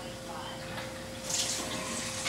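Water running from a Kangen water ionizer's spout into a glass, a steady pour that grows louder about a second and a half in.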